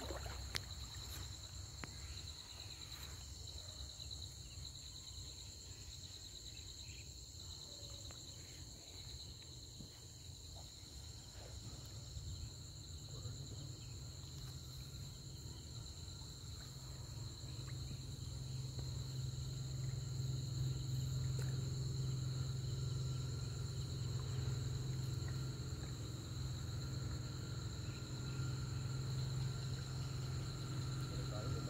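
Steady chorus of insects, a continuous high trill, over a low rumble that grows louder about two-thirds of the way through.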